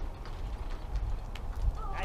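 Wind rumbling on the microphone outdoors, with a few faint clicks, and a short high tone near the end.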